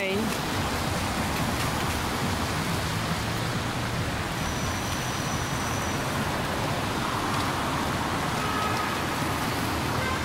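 Steady rush of city street traffic, an even noise with no distinct events.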